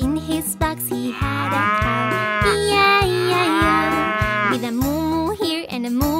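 A cow mooing twice, each a long moo of about a second and a half, over the steady beat of a children's song backing track.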